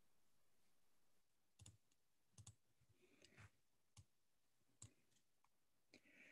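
Near silence, broken by a handful of faint, short clicks spread over a few seconds.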